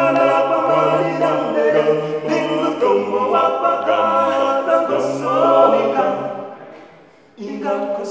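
Four-man a cappella gospel group singing in close harmony, a sung bass line holding low notes under the upper voices. About six seconds in the singing fades to a brief near-pause, then a new phrase comes in abruptly just before the end.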